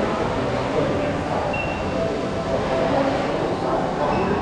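Steady murmur of many visitors talking at once in a busy exhibition hall.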